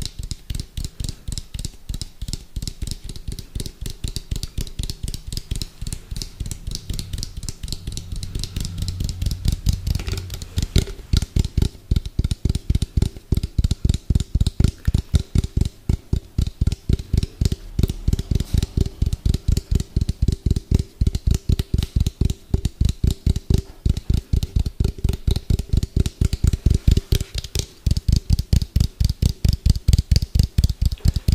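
Fast, hard fingertip tapping on a hollow plastic shell close to the microphone: a steady rapid run of dull, thudding taps, several a second, growing louder about ten seconds in.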